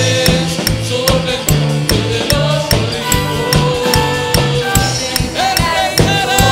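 A live worship band playing: drum kit keeping a steady beat, electric bass, keyboard and electric guitar, with a male lead vocal holding long sung notes.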